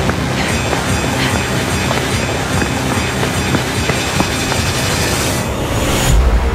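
Film-trailer sound design: a loud, steady clattering noise dense with scattered clicks, mixed with music. A hiss swells near the end.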